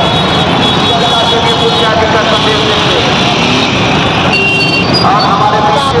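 Loud, steady street din of a dense festival crowd and slow traffic: many overlapping voices mixed with the running of motor vehicles, with no single sound standing out.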